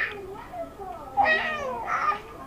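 A baby of about four months vocalizing happily in high, gliding coos: a faint one in the first half, then a louder, longer one from a little past the middle.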